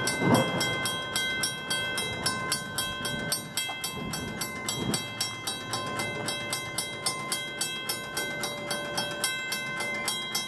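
Railroad grade crossing warning bell dinging steadily, about three strokes a second, as the gate arms rise after the trains have cleared. A low rumble from the passing trains fades during the first half.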